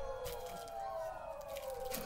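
Singing from a TV: long held vocal notes sliding slowly downward, with light knocks and rustling as the camera is handled.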